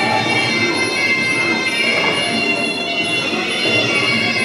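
Traditional Muay Thai fight music (sarama) played during a bout: the shrill, sustained wail of a reed oboe (pi java) over the noise of a crowd in the hall.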